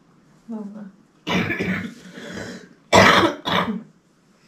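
Coughing: a short pitched vocal sound, then a long rasping cough and two sharp, loud coughs near the end.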